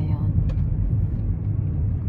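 Steady low rumble of a car's engine and tyres, heard from inside the cabin while it drives slowly.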